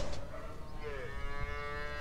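A calf bawling: one long call that starts a little before a second in, dips slightly in pitch at first, then holds steady.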